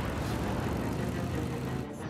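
Cartoon spaceship engine sound effect: a steady, dense low rumble that drops away just before the end.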